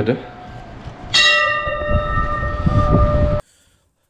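Temple bell struck once about a second in, ringing with a slowly fading metallic tone until the sound cuts off abruptly. The fading ring of an earlier strike is still audible at the start.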